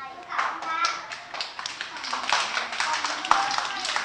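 A class of young children clapping their hands, many pairs of hands at once in a quick, irregular patter that starts about a third of a second in.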